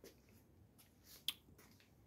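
Near silence: room tone, with a few faint ticks and one sharp click a little past halfway.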